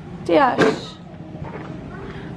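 A short wordless vocal exclamation from a person, its pitch gliding down and back up, followed by a quieter stretch of low background noise.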